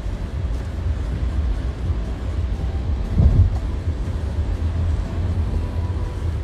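Steady low rumble inside a car's cabin, with a brief louder low thump about three seconds in.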